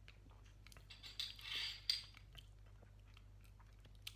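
Faint mouth sounds of someone tasting a sip of beer: small lip smacks and tongue clicks, with a short breathy rush and a sharper click between about one and two seconds in.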